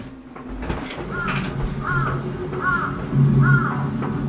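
A crow cawing four times, evenly spaced, over a low steady hum.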